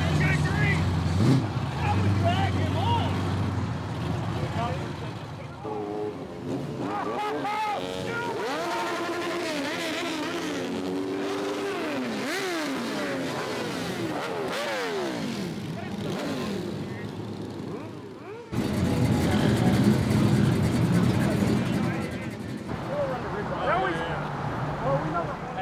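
Cars and motorcycles driving past on a cruise strip. A low engine rumble comes first, then engines revving with their pitch rising and falling. About three-quarters of the way through, a loud low rumble starts suddenly.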